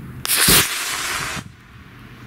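Estes Big Bertha model rocket lifting off on a B6-4 black-powder motor. A sudden loud rushing hiss begins about a quarter second in, lasts a little over a second, then falls away.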